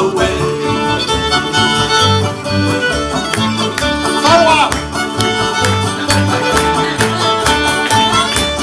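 Live bluegrass band playing an instrumental break: a fiddle carries the melody over upright bass and strummed acoustic guitar, with a steady bass rhythm.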